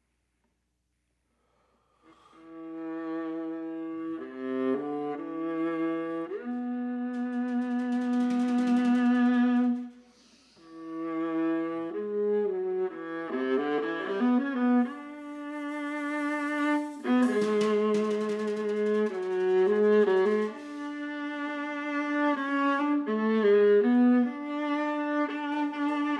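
Solo viola playing slow, sustained bowed notes, often two at once, in a contemporary chamber piece, entering after about two seconds of silence. Percussion joins, with a cymbal sounding about two-thirds of the way through.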